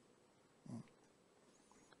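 Near silence with one brief, low vocal sound from a man, like a short 'mm', less than a second in.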